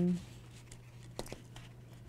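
A short voiced hum dies away at the very start, then faint crackles and taps of a sheet of adhesive craft vinyl being smoothed by hand onto a Cricut cutting mat, with two sharper crinkles a little after a second in. A low steady hum sits underneath.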